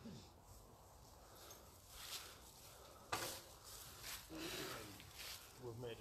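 Quiet rustling and crunching in dry leaf litter underfoot: a few scattered footsteps, the sharpest about three seconds in. A man's voice starts again at the very end.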